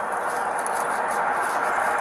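Steady outdoor background noise with a faint low hum and no distinct events, picked up by a police body camera's microphone.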